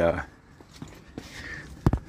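Faint footsteps with a few light ticks, then one sharp thump near the end.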